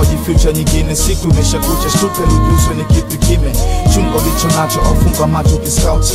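Hip hop music: a steady drum beat with heavy bass under a melodic vocal line with long held notes.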